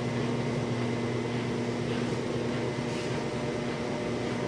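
Web-handling test stand running, a steady mechanical hum with a low drone as its rollers and nip rollers carry a running web of light material.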